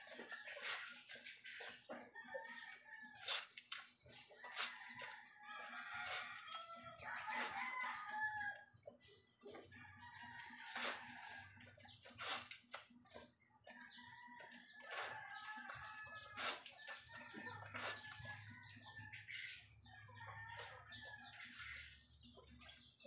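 Wet laundry being scrubbed by hand in a basin of soapy water: repeated sharp splashes and sloshes of cloth. Behind them, chickens cluck and a rooster crows again and again.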